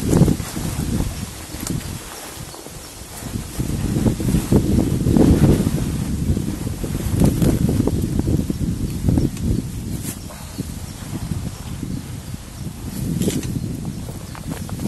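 Wind buffeting the microphone outdoors: a gusty low rumble that swells and fades, with a couple of brief sharp clicks near the end.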